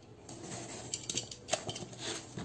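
Utility knife blade slitting packing tape and plastic wrap on a cardboard box: a scratchy cutting sound with a few sharp clicks about a second in and again around a second and a half.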